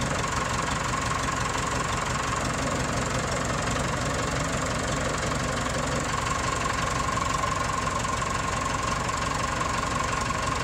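Tractor engine running steadily, with a steady whine above it that grows stronger about six seconds in, while the hydraulic three-point hitch's lift arms are lowered and raised.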